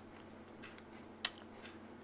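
A single sharp click of a computer mouse button about a second and a quarter in, over faint room hiss.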